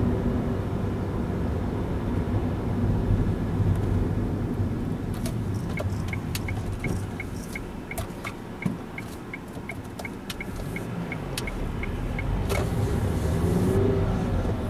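Car engine and road rumble heard inside the cabin, with the turn-signal indicator ticking steadily, a little over twice a second, for about seven seconds from around the middle as the car slows and turns onto a main road. The engine and road noise dip during the turn and grow louder again near the end.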